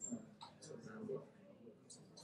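Faint, distant voices of people talking among themselves, with a few small clicks and a brief high squeak at the start.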